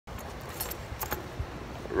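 A handful of light, high clinks and jingles in the first second or so, over steady outdoor background noise.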